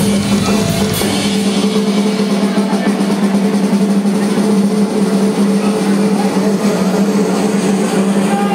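Live rock drum-kit solo: fast, dense rolls across the snare and drums, over a steady low held tone.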